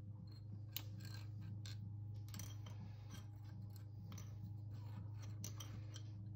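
Faint clicks and scratchy ticks of pencils being handled and set down as one drawing pencil is swapped for a hard pencil, over a steady low hum.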